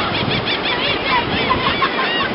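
Gulls screaming for food: a rapid run of short, arching squealing calls, several a second, over a steady wash of surf and wind.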